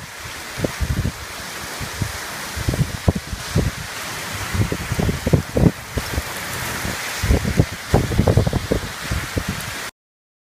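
Heavy rain falling steadily, with gusts of wind buffeting the microphone in short, irregular low thuds. The sound cuts off suddenly just before the end.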